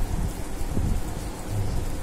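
Hand whisk beating oil and grated jaggery in a glass bowl: a steady, noisy scraping and patter with a low rumble underneath.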